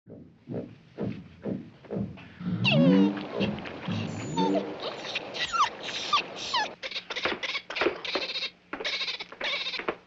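Small poodle barking repeatedly in short yaps, with background music.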